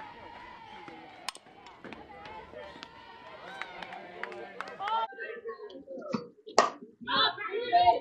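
Faint ballpark background at a softball game: scattered distant voices and chatter from the field and stands, with a few sharp clicks. It grows a little louder and more voice-like in the second half.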